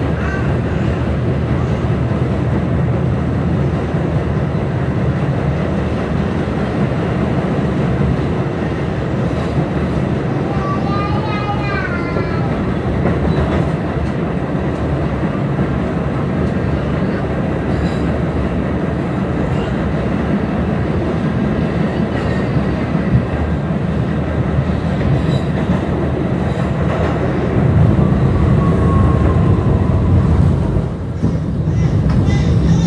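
New York City subway car of the N train running at speed, heard from inside the car as a steady, loud rumble of wheels on rails. There is a brief wavering high tone about eleven seconds in, and the rumble grows louder near the end.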